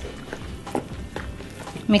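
Plastic rice scoop stirring sweet rice flour and water in a ceramic bowl, knocking lightly against the bowl in a few irregular clicks.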